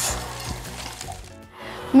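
Diced onions sizzling in oil in a frying pan, the hiss fading out about a second and a half in, over soft background music.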